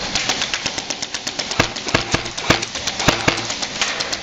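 Airsoft gunfire: a rapid, irregular run of sharp clicks and cracks from guns firing and BBs striking nearby surfaces, with about four louder cracks in the second half.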